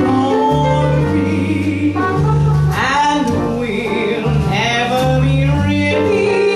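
Live jazz quintet playing an instrumental passage: trumpet carrying the line over double bass, piano and drums, with the bass stepping from note to note about every half second.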